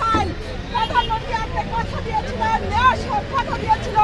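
A woman shouting a repeated protest slogan in a high, strained voice over crowd babble, with a low rumble of traffic underneath.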